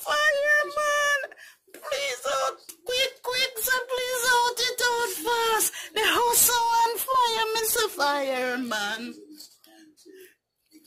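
A woman singing unaccompanied in long, drawn-out notes with vibrato, the pitch sliding down near the end.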